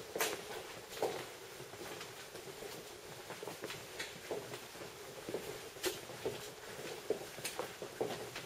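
Footsteps on the hard floor of a vaulted underground cellar passage: an uneven series of light steps over a quiet room tone.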